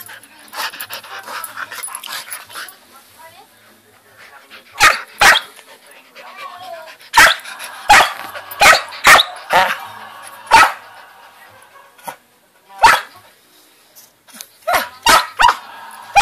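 Samoyed puppy barking in short, sharp, loud barks, starting about five seconds in and coming singly at first, then in a quick run near the end. It is demand barking for attention.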